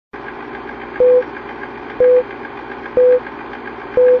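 Film-leader countdown sound effect: a steady, fast-fluttering film projector run with a short beep once a second, four beeps.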